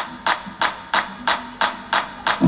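Live band music stripped down to a single sharp percussion hit repeating evenly, about three times a second, with little bass or sustained instruments underneath.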